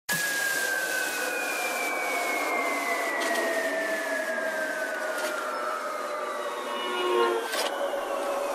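Intro of an electronic dance remix: two tones glide slowly downward over a hissing wash, with no bass underneath.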